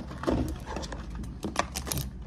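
A few short, sharp knocks and clicks: one near the start, then a quick cluster in the second half.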